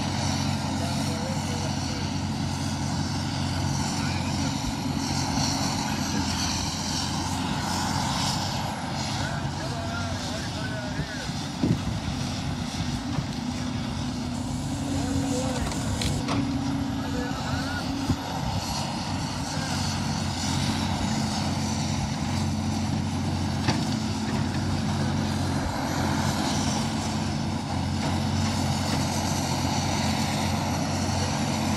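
Caterpillar 568 log loader's diesel engine running steadily as the boom and grapple work, with about four short sharp knocks in the middle of the stretch.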